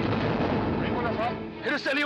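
Gallows lever pulled: a loud rumbling crash that lasts about a second and a half before dying away, with a voice near the end.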